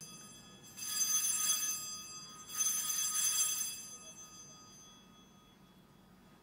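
Altar bells shaken twice, about two seconds apart, each ring a bright cluster of high tones that lingers and fades out. They sound the elevation of the chalice at the consecration.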